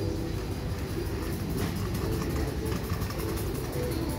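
Steady low rumble of shop room noise, with faint background music playing.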